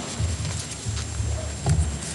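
A few low, muffled thumps and knocks, about three in two seconds, over faint room hiss.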